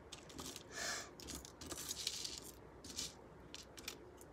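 Faint small clinks and rustles of a metal necklace chain and pendant being handled and laid on a card, several light ticks spread through.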